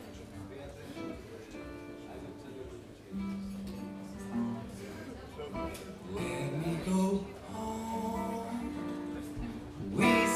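A live blues band with guitars playing the opening of a slow song, sparse sustained notes that fill out and grow louder about six seconds in.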